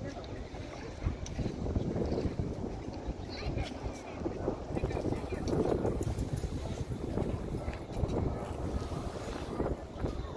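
Wind buffeting the microphone in a continuous low rumble, with indistinct voices in the background.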